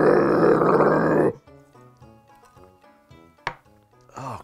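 A man's guttural death-metal growl, loud and rough, breaking off about a second and a half in. Then faint background music, and a single clink near the end as a glass is set down on a wooden board.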